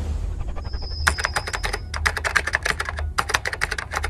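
Rapid computer-keyboard typing clicks, about ten a second, starting about a second in, with a low steady hum beneath.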